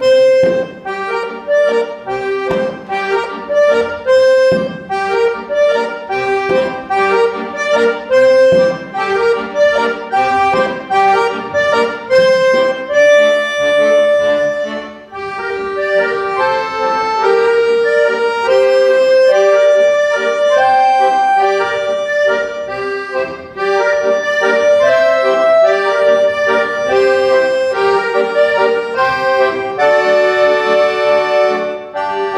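Accordion ensemble playing together, with rhythmic, strongly accented chords in the first half, a brief dip about halfway through, then smoother, longer-held chords.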